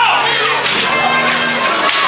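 Two sharp whip lashes about a second apart, part of the ritual whipping of a Good Friday penitensya, with music and sustained tones going on behind.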